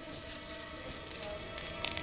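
Broken glass shards clinking and crunching under bare feet as a person steps onto them, over faint background music.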